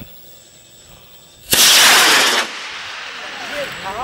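Model rocket motor igniting about a second and a half in: a sudden loud rushing hiss of exhaust for about a second, then a quieter steady hiss as the motor keeps burning.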